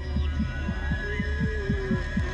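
Dramatic soundtrack: a fast pulse of low thumps, about six or seven a second, over a low drone, with a wavering held tone coming in about a second in.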